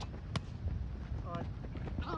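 A Spikeball roundnet ball being struck in play: one sharp smack about a third of a second in, over a steady low background rumble.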